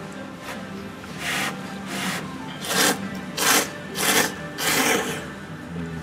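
A person slurping thick ramen noodles in a run of about six short, loud slurps in quick succession, roughly one every 0.7 seconds, from about a second in until about five seconds.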